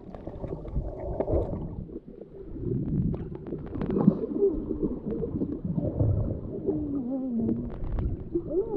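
Underwater sound picked up by a camera below the surface: muffled water sloshing and gurgling with scattered clicks. A few wavering, muffled tones come through about halfway and again near the end.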